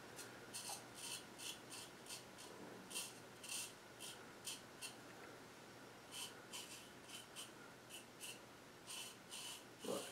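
GEM Micromatic Clog Proof single-edge safety razor scraping through lathered stubble in short, faint strokes, about two to three a second, with a brief pause a little after the middle; a fresh blade cutting well.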